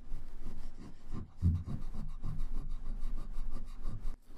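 Pink rubber eraser scrubbing pencil guidelines off drawing paper in quick, repeated back-and-forth strokes.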